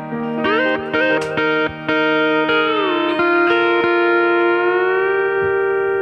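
Mullen double-neck pedal steel guitar playing an open-string lick in E flat: picked notes, then the chord bends down in pitch about three seconds in and slowly rises again near five seconds, ending on a sustained chord.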